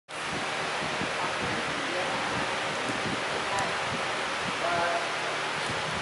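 Steady, even hiss of room noise in a large hall, with faint voices coming in near the end.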